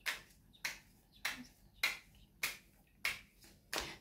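Sharp snap-like clicks repeating evenly, about one every 0.6 seconds, seven in all.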